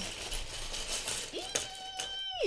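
Small plastic LEGO pieces clattering and clinking onto a wooden tabletop as a bag of them is poured out. About one and a half seconds in, a person's voice holds a steady note.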